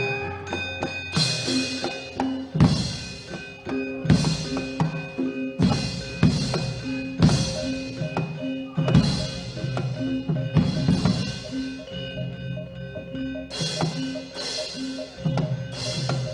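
Javanese gamelan playing fast, loud fight-scene music: drum strokes, ringing pitched metal notes and a crashing stroke repeated about once a second.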